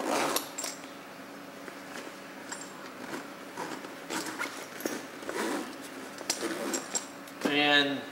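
Zipper and nylon fabric of a soft insulated lunch cooler being handled: scattered short zip strokes and rustles as the pocket is worked. A brief spoken syllable sounds near the end.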